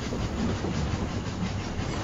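A train running, heard from inside its carriage: a steady low rumble.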